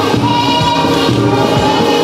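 A young girl singing an isiZulu gospel worship song into a microphone over a PA, with choir voices and a steady beat behind her.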